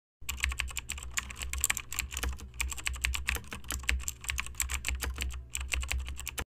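Computer-keyboard typing sound effect: a fast, continuous clatter of key clicks with two brief pauses, over a low steady hum.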